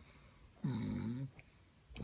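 A man making exaggerated mock snores in a throaty voice. One drawn-out snore falls in the middle, and the next begins right at the end.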